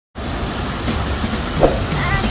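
Large multi-jet fountain's water plumes spraying and splashing into the basin: a steady rushing hiss that starts abruptly just after the start.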